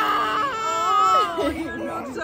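Six-month-old baby crying over her freshly pierced ears: two long, wailing cries, the second fading out about a second and a half in.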